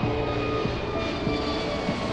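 Twin-engine jet airliner's engines running during its climb after takeoff, heard as a steady roar under background music with long held notes.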